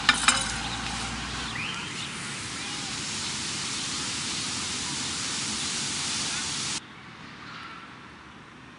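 Steady outdoor hiss of a city plaza, with two sharp knocks at the very start. The hiss cuts off suddenly near the end, giving way to fainter, quieter background noise.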